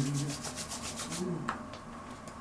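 Hands rubbing briskly, a quick run of about eight strokes a second that lasts about a second and then stops.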